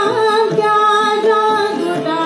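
A woman singing a Hindi devotional song (bhajan) in held notes that glide between pitches, with harmonium accompaniment.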